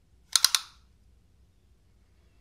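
A quick cluster of about three sharp clicks, about a third of a second in, from the folding knife being handled and laid against a ruler to measure it. After that there is only quiet room tone.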